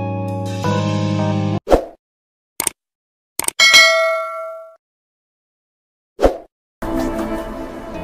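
Subscribe-button animation sound effects. The background music cuts off, and a short swish is followed by clicks and a bright bell-like ding that rings for about a second. After another swish the music starts again near the end.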